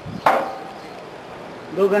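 A single sharp knock about a quarter second in, with a short ring that fades quickly.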